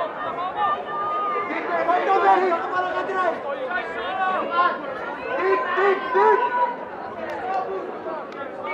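Spectators chatting and calling out, several voices overlapping throughout with no single speaker standing out.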